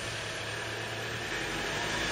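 A motor vehicle engine running steadily against street background noise, its low hum slowly growing louder.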